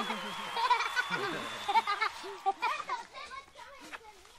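Children's voices, short calls and squeals during play, growing quieter and sparser toward the end.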